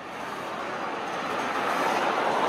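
Street traffic noise: a steady rush of passing vehicles that grows gradually louder.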